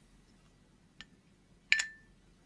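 Two small clicks from diecast model car parts being handled on a cutting mat. The second, near the end, is louder and has a short metallic ring.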